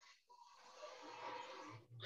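Near silence: faint background hiss from a video-call microphone between speakers.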